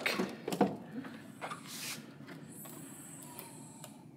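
Rear liftgate of a 2013 GMC Acadia being unlatched and opened: a few clicks near the start, a soft swish about two seconds in, then a faint high steady hum.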